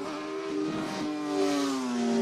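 Intro/outro logo sting: a rushing whoosh sound effect over sustained synthesizer tones, the tones sliding down in pitch in the second half like a passing car.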